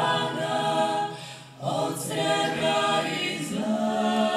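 Small women's vocal group singing together, with a short break in the singing about a second in before the voices come back in.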